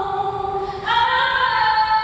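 Choir singing long held notes, moving to a new, louder chord a little under a second in.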